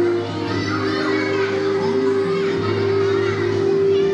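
A group of young children's voices over backing music that holds one long steady note.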